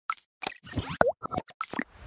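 A quick run of short pop and plop sound effects from an animated logo intro, about eight in under two seconds, one with a curving slide in pitch about a second in.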